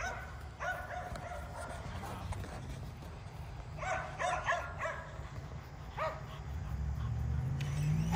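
Kerry Blue Terriers barking in short clusters of yips and barks, the busiest burst about four seconds in. Near the end an electric RC truck's motor comes in with a low hum that rises steadily in pitch as it speeds up.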